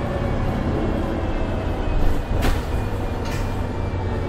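MAN A22 city bus with Voith automatic gearbox driving, heard from inside the passenger cabin: a steady low drivetrain rumble with a faint whine. A single sharp knock about two and a half seconds in.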